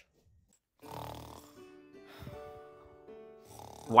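A single loud snore from someone asleep about a second in, over slow music with long held notes.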